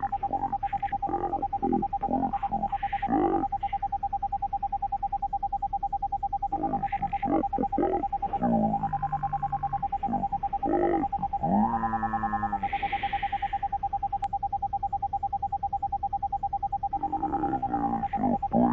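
Slowed-down cockpit audio: a steady, throbbing hum-like tone throughout, with drawn-out, pitch-shifted voice-like sounds coming and going over it.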